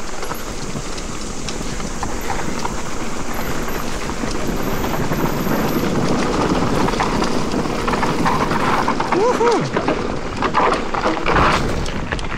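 Wind rushing over the camera microphone and mountain-bike tyres running over a leaf-covered dirt trail at speed, with the bike knocking and rattling over bumps, most densely near the end. A short vocal sound comes a little past halfway.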